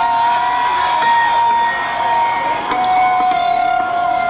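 Concert crowd noise between songs, under a steady high tone held through the stage sound system, with a second tone joining and dropping out.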